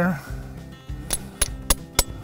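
Hammer tapping a metal spile into a maple trunk's drilled tap hole: four light metallic clinks, about three a second, starting about a second in.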